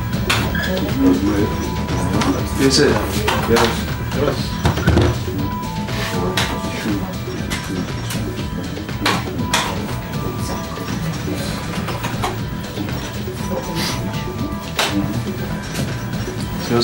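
Slot-machine hall ambience: electronic tones and repeated sharp clicks from the gaming machines, over a low murmur of background voices and music.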